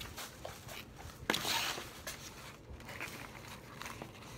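Plastic shopping bag and ribbon packaging rustling and crinkling as they are handled, with scattered small clicks and one louder rustle about a second in.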